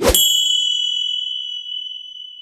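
A single bright bell-like ding, struck once at the start and ringing on with a slow fade, its higher overtones dying away first.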